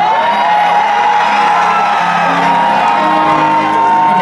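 Live pop music: long held sung notes that step up in pitch partway through, over sustained low chords, with the audience whooping and shouting.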